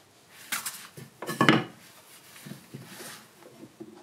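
Carved wooden spoon knocking against a wooden carving jig as it is handled and set down into it, wood on wood: a couple of sharp knocks about half a second in, a louder clatter around a second and a half in, then lighter taps.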